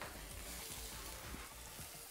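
Spring cabbage sizzling in a frying pan on the hob: a faint, steady hiss.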